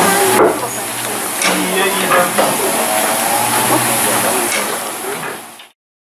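Steam locomotive standing with a steady hiss of escaping steam, people's voices talking around it. The sound fades out near the end.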